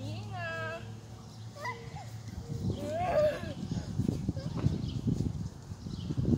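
A small child's high-pitched vocal calls, one gliding up and down near the start and another about three seconds in. Low rumbling noise fills the second half.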